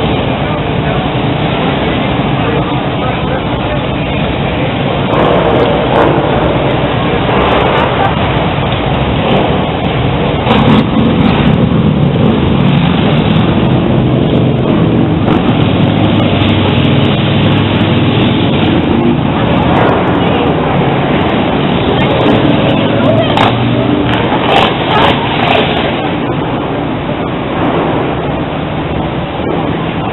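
Loud, steady street noise of motor vehicles running past, with indistinct voices in the background. An engine grows louder in the middle.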